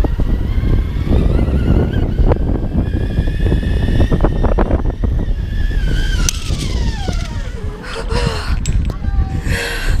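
Zip-line trolley pulleys whining on the cable, the pitch climbing a little as the rider picks up speed and then sliding steadily down as she slows toward the landing. Heavy wind rumble on the microphone from the speed of the ride.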